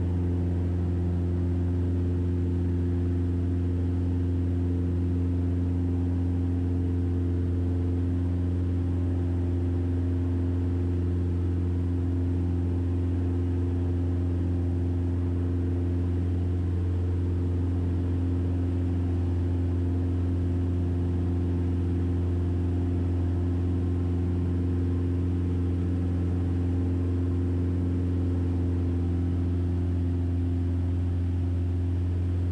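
1966 Mooney M20E's four-cylinder Lycoming engine and propeller droning steadily in the cabin in flight, a low, even hum at constant power.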